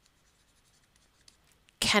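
Faint light ticks and scratching of a stylus writing on a tablet screen.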